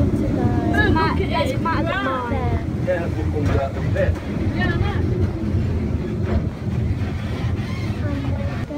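Steady low rumble of a small passenger train running, heard from aboard, with people's voices talking over it for the first few seconds.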